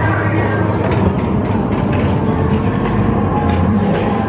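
Haunted Mansion Doom Buggy ride vehicles moving along their track: a steady low rumble and rattle of a dark-ride conveyor.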